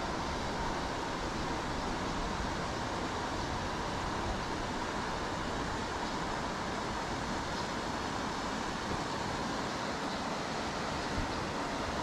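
Steady, even background noise with a faint high hum running through it and no distinct events.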